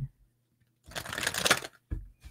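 A deck of oracle cards being shuffled by hand. There is a brief rapid rustle of cards sliding against each other from about the middle, then a soft knock just before the end.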